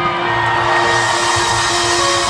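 Live rock band in an arena holding a sustained chord, several steady tones, with crowd noise underneath, as the intro to a song.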